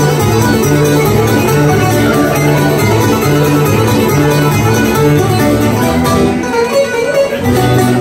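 Greek bouzouki playing a melody over acoustic guitar accompaniment, an instrumental passage of plucked strings with a steady rhythmic bass line. The sound thins out briefly about six seconds in.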